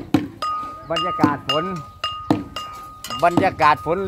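Small Thai hand cymbals (ching) struck a few times, about a second apart, each stroke ringing on with a clear high tone, under a man talking.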